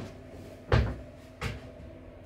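Shoes being handled and set down on a hard surface: two dull thuds, the first a little under a second in and the louder of the two, the second about half a second later, over a faint steady hum.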